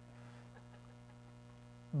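Low, steady electrical mains hum, the only sound in a gap between spoken words.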